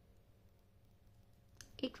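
Faint clicks of metal knitting needles being worked through stitches, over a low steady hum; a woman's voice begins near the end.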